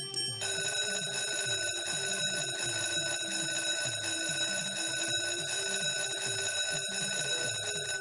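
Book of Ra video slot's win sound: a steady electronic bell-like ringing switches on about half a second in and holds without a break over the game's looping low background tune, while the expanding explorer symbol fills the reels for a big free-spins win.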